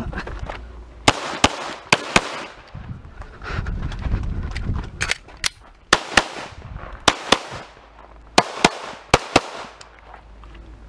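Semi-automatic pistol fired in quick pairs of shots, about seven pairs in all. After the first two pairs there is a gap of about three seconds filled with low rumbling movement noise.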